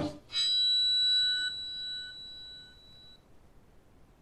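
A single bell-like chime struck once about a third of a second in, ringing with several high tones together and fading away over about three seconds.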